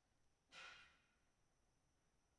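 Near silence, with one short, faint breath about half a second in.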